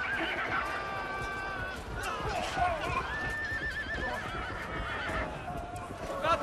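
Horses whinnying over a busy clatter of hooves in a battle, with a long trembling neigh from about three seconds in.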